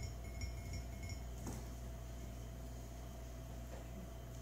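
Quiet room tone with a steady low hum, and faint high ringing tones in the first second or so.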